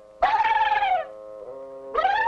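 A high, held cry that wavers slightly and falls away at its end, over soft background music; a second, similar cry begins right at the end.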